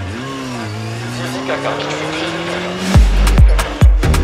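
A break in a rap beat filled with a car sound effect: sliding tyre-squeal-like tones, then an engine note rising slowly in pitch. The heavy bass beat comes back in about three seconds in.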